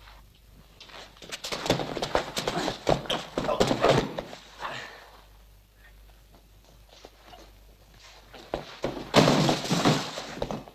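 Thuds and scuffling of hand-to-hand practice bouts: feet shuffling and bodies hitting the floor or mats. They come in a dense burst of knocks between about one and four seconds in, and again in a loud burst near the end.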